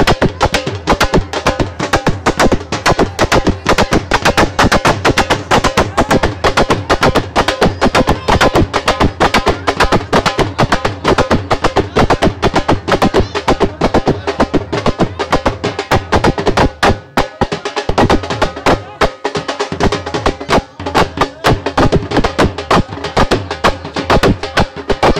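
Dhol drums played live with sticks: a fast, steady, driving beat of dense strikes that never stops.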